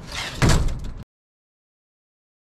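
A vehicle door being worked: a loud rush of noise lasting about half a second, beginning just under half a second in, after which the sound cuts off abruptly to silence.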